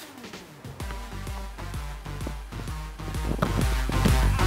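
Background music with a steady beat, getting louder throughout.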